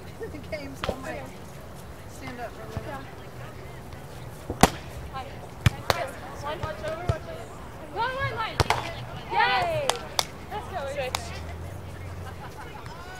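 Hands striking a volleyball during a beach volleyball rally: a handful of sharp smacks, the loudest about four and a half seconds in, with others a second later and near eight and a half and ten seconds in. Players call out loudly between about eight and ten seconds in.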